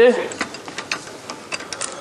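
A run of light, irregular metallic clicks from a socket wrench and socket being handled and fitted together.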